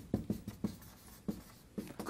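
Chalk writing on a blackboard: a quick run of short taps and scratches as a word is written out stroke by stroke.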